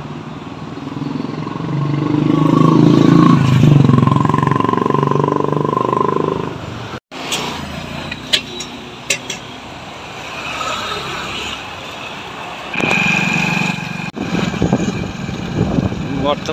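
Street traffic: a motor vehicle engine runs loud and close, peaking about two to six seconds in, then cuts off abruptly. Lower street noise follows with a few sharp clicks, and a shorter loud engine sound comes near the end.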